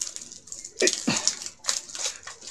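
Plastic shrink-wrap being torn and pulled off a book, in irregular crinkling rips; the wrap is stuck fast and hard to peel. A short strained grunt of effort comes about a second in.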